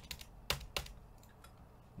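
Computer keyboard keys pressed: a handful of sharp clicks in the first second, the loudest about half a second in, then quiet.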